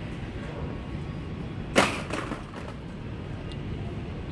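A single sharp clack about two seconds in, with a few lighter rattles after it: a blister-packed pair of pliers tossed into a wire shopping cart. Under it runs a steady background hum.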